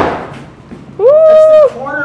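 The ring of a wooden mallet blow on a ballistic-nylon-skinned test panel dies away, then about a second in a man lets out a loud, drawn-out vocal exclamation on one held note, lasting under a second.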